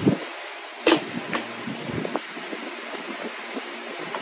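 Small items being handled and put into a messenger bag: a sharp click about a second in, a softer click shortly after, then faint handling noises over a steady low hiss.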